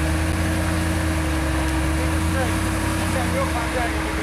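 Jeep Wrangler engine running at low revs under load as it crawls up a rock ledge, a steady low rumble that eases off shortly before the end. Faint voices in the background.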